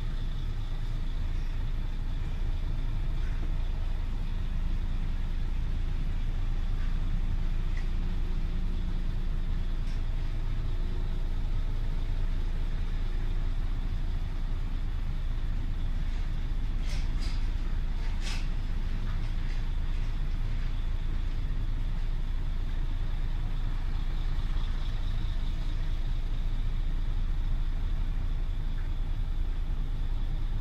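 Tractor-trailer diesel engine running steadily at low revs as the truck creeps along a loading dock, with a couple of brief sharp high sounds a little past the middle.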